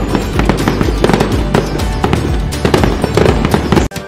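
Festive music with firework sound effects mixed in: rapid crackles and bangs over a steady musical bed, cutting out abruptly for a moment just before the end.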